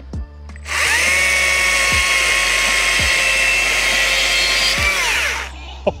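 Stihl MSA 140 C 36-volt cordless chainsaw cutting through a wooden 4x4. The electric motor spins up with a rising whine under a second in and holds a steady pitch through the cut without bogging, slicing through easily. It winds down and stops about five seconds in.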